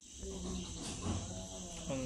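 Steady, high-pitched chirring of insects, with faint voices in the background.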